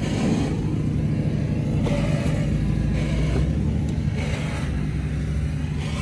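A vehicle engine idling steadily, a low even rumble.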